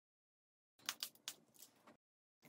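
Dead silence for almost a second, then a few brief, soft rustles and taps of a paper towel and a plastic stencil being handled on a painted canvas.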